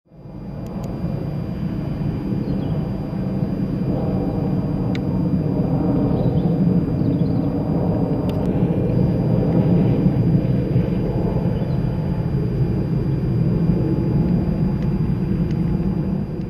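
Outdoor ambience: a steady low rumble of road traffic, fading in over the first second.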